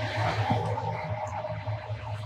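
Faint rustle of PTFE thread seal tape being unrolled and wrapped onto the threads of a 2-inch PVC pipe fitting, over a steady low hum.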